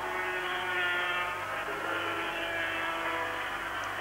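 Two-stroke 500cc Grand Prix racing motorcycle engines running at high revs on the circuit, a steady, buzzing engine note that shifts a little in pitch.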